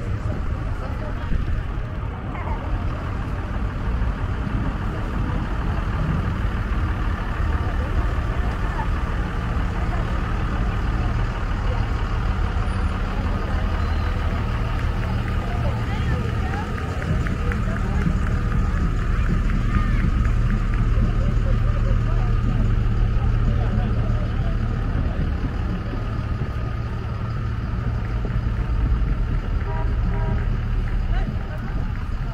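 Trucks driving slowly past one after another, engines running at low speed with a steady low rumble, and people talking nearby.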